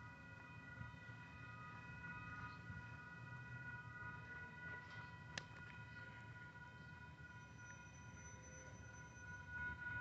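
Faint, steady ringing of a railroad grade-crossing warning bell, several tones held together without a break, with one sharp click about five seconds in.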